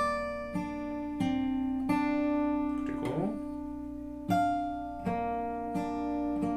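Bedell acoustic guitar with a capo, played fingerstyle: the song's instrumental interlude as a run of plucked chords and single notes, each left ringing into the next.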